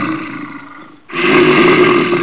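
Lion roar sound effect, heard twice: one roar fading out over the first second, then a second loud roar starting about a second in.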